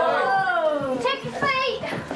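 Excited voices of children and adults: a long drawn-out falling exclamation, then two short high-pitched squeals about a second in.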